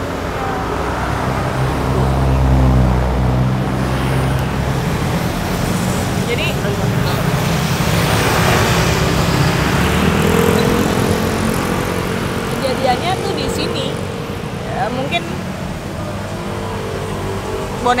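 Road traffic: cars and motorbikes driving past on a road. A low engine rumble swells about two seconds in, and tyre and engine noise rises to a peak near the middle as a vehicle passes.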